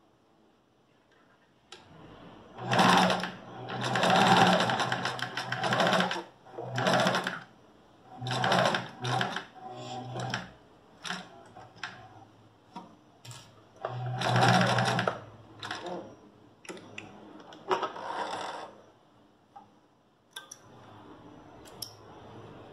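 Electric domestic sewing machine stitching a seam through two layers of fabric in a series of short runs, each lasting up to about two seconds, with brief pauses and a few small clicks in between.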